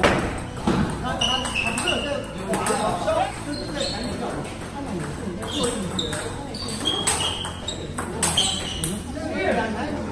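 Table tennis rally: the ball clicking sharply off the bats and the table in quick strikes, with voices in the background.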